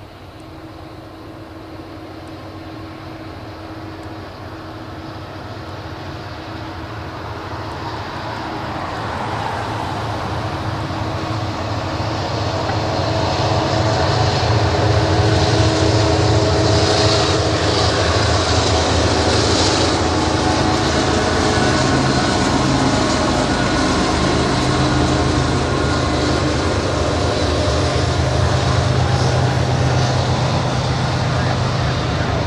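Norfolk Southern freight train led by two GE diesel locomotives approaching, its engines and rumble growing steadily louder for about fourteen seconds as they draw near and pass, then staying loud as the double-stack intermodal cars roll by with a continuous rail rumble.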